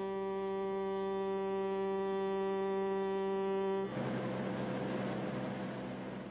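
A riverboat's horn sounds one long, steady blast that cuts off suddenly about four seconds in, leaving a rushing noise.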